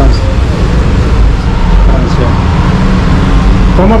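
Loud, steady low rumble of background noise, with faint voices over it.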